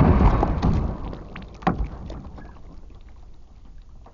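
A water-filled plastic gallon jug burst by a 9 mm air-rifle slug: water splashing and spraying, loud at first and dying away over about a second. A single sharp knock follows a little under two seconds in.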